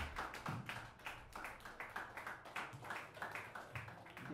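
Sparse applause from a small audience after a song ends: separate hand claps, several a second, at an uneven pace.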